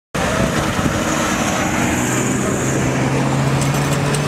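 Military pickup trucks driving by on a dirt track: engines running under a steady rush of noise, with a low engine drone coming up about two seconds in.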